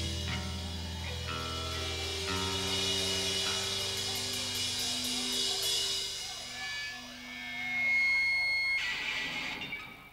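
Live rock band playing the closing bars of a song: electric guitar and bass chords held and changing over a drum kit, with a run of cymbal and drum hits in the middle. The music swells once more and dies away near the end.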